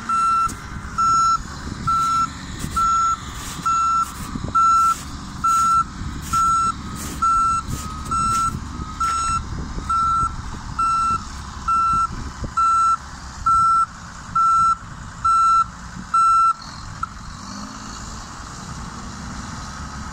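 Backup alarm on heavy earthmoving equipment beeping steadily, about once a second, over the low rumble of diesel engines. The beeping stops about three-quarters of the way through.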